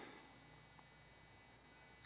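Near silence: faint steady background hiss and hum between spoken phrases.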